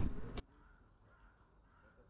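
The last of the narrator's voice fades out in the first half second, then near silence.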